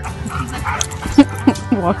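Dog giving a few short barks and yips during play, the sharpest about a second in.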